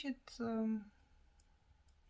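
A woman's voice holding one short, level syllable, like a hesitation sound, then a quiet pause with one faint click in the middle of it.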